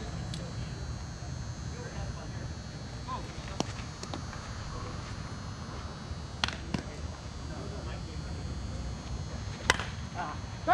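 Outdoor field ambience with steady low background noise and a few scattered faint clicks. Just before the end comes one sharp crack of a softball bat hitting the ball, a foul knocked out of play.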